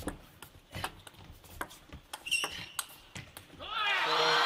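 Table tennis ball struck back and forth in a rally: a run of sharp, irregular clicks of the celluloid ball on rackets and table, with a brief high squeak about two seconds in. A man's commentary voice comes in near the end.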